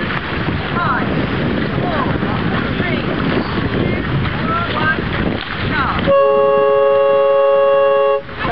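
Wind buffeting the microphone over splashing water, then about six seconds in the race committee boat's horn sounds one steady blast of about two seconds: the starting signal for the race.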